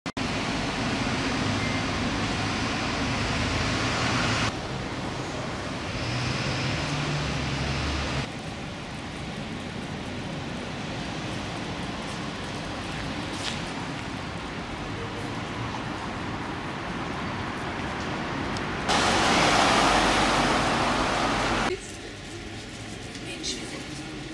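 Steady background traffic and car noise with indistinct voices, shifting abruptly in level and character several times. The loudest part is a stretch of rushing noise a few seconds before the end.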